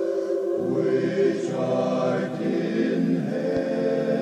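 Backing choir singing sustained wordless chords, with a lower bass part entering about half a second in and the chord shifting again near the end.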